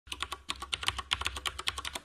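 Computer-keyboard typing sound effect: rapid keystroke clicks, about ten a second, over a low steady hum.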